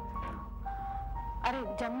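Background score of long held electronic keyboard notes, the melody stepping to a new note a few times, over a low hum; a woman's voice comes in near the end.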